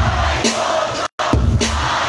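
Dance music with a heavy bass beat, played by a DJ on a Pioneer controller through loud speakers, over the noise of a large crowd. The sound cuts out completely for an instant about a second in, then the beat resumes.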